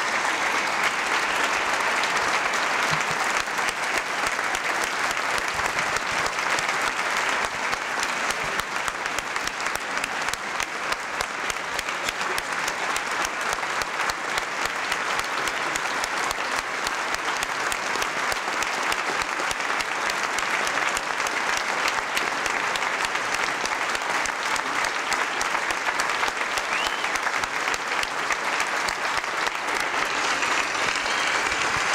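Large audience applauding: many hands clapping in a dense, steady wash of sound.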